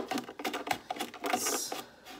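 Metal aquascaping spatula pushing and scraping through wet sand on the floor of a small tank: a run of irregular gritty clicks and scrapes, with a brief hissing scrape about midway.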